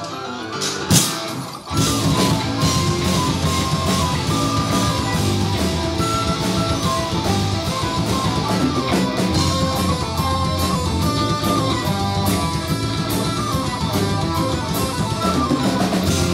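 Folk metal band playing live. A quieter melodic passage ends with a sharp hit about a second in, and after a brief drop the full band comes in with drum kit and guitars, a high melody line carried on top.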